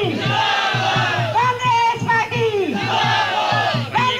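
A crowd of supporters shouting a slogan in unison. The same falling call is repeated about three times, over a fast, steady beat.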